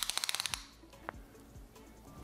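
A fast, even rattle of sharp clicks, about twenty a second, lasting about half a second, followed by a few single clicks, over faint background music.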